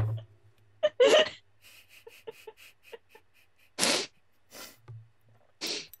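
Stifled laughter from a woman who nearly spat out her coffee: three loud short breathy bursts, about a second in, near four seconds and near the end, with faint pulses of laughter between.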